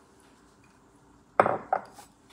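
A coffee mug knocking against the tabletop twice near the end: a sharp clunk and a smaller one just after it.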